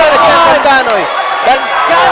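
Mostly speech: a boxing commentator talking over arena crowd noise.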